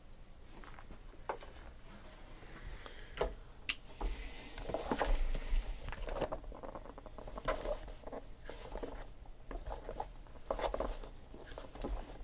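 Hands picking up and turning over a taped, plastic-wrapped cardboard case: a few light taps and clicks at first, then irregular rustling and scraping of cardboard and plastic from about four seconds in.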